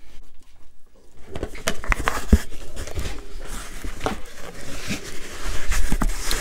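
Cardboard box being cut open and its flaps handled: rustling and scraping with several sharp knocks, the loudest about two and a half seconds in.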